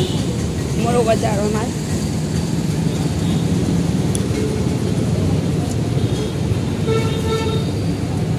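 Busy street-market ambience: a steady rumble of road traffic with voices in the crowd, and a vehicle horn sounding briefly near the end.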